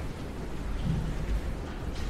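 Steady low rumbling noise with a soft low thump a little over a second in.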